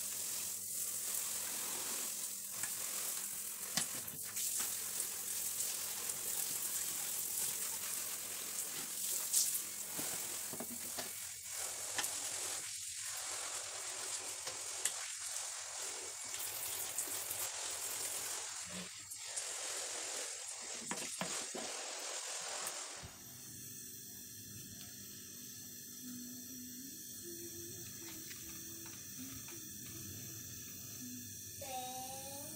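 Shower spray hitting a window insect screen: a steady hiss of running water with a few small knocks as it is rinsed. About 23 seconds in it cuts off suddenly to a quieter steady background.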